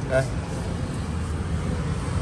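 Steady low vehicle rumble, unchanging.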